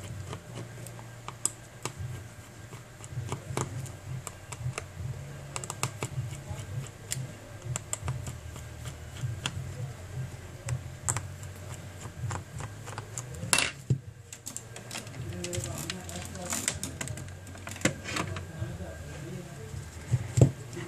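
Light, irregular clicks and ticks of a small precision screwdriver unscrewing tiny screws from a smartphone's plastic back frame, with screws and plastic handled in between; one sharper click about two-thirds of the way through.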